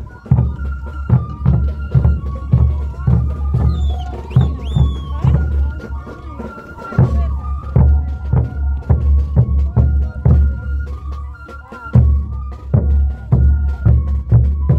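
Andean festival folk music with a steady, heavy bass drum beat under a sustained melody line.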